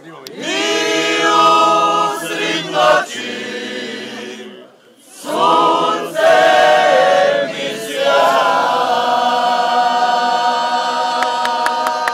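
A group of people singing together unaccompanied, in slow phrases of long held notes, with a short break about four and a half seconds in.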